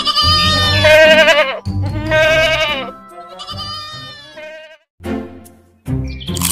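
Goats bleating: a run of wavering, drawn-out bleats about a second each, the later ones fainter, with a short one near the end.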